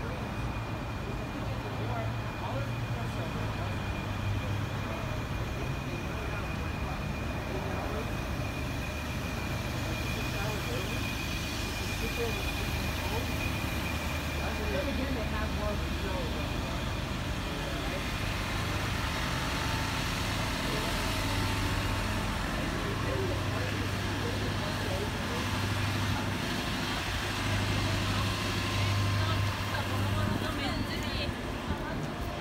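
Street traffic ambience with a steady low hum of idling bus engines, a thin high whine through the first half, and the voices of passersby.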